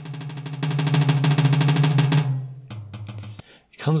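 Fast drum roll on a mesh pad of a MUSTAR electronic drum kit, heard through the kit's drum sound, swelling louder over the first second as the strokes get harder: the kit's hit sensitivity. The roll stops a little over two seconds in, followed by a few single hits.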